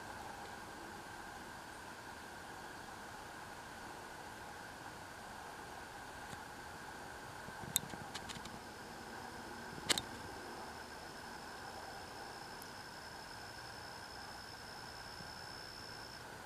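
Faint, steady background hum and hiss, with a thin high tone that comes in about halfway and holds. A couple of brief clicks fall just past the middle.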